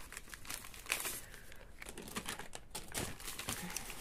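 Thin clear plastic bag crinkling in irregular small crackles as it is opened and handled, with metal candle-wick holder tabs inside.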